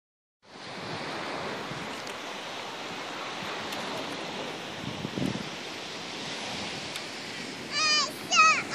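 Steady wash of sea surf and wind on a beach. Just before the end a high call with a wavering pitch begins.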